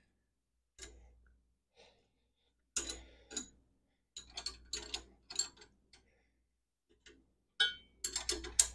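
Two 9/16-inch wrenches clicking on the jam nuts of a Gravely Model L clutch adjusting rod as the nuts are tightened against each other: a few short groups of light metal clicks with quiet gaps between.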